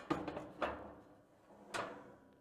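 Cast-iron grill grates being set down onto a gas grill's firebox, three metal knocks with a short ringing tail, about half a second and a second apart.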